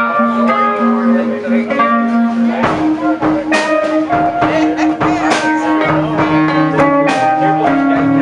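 A live blues band playing an instrumental passage on mandolin and electric and acoustic guitars. Long held notes step up in pitch about three seconds in, under steady strumming.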